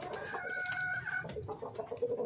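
Chickens calling: one drawn-out high call lasting about a second, then a quick run of short clucks near the end.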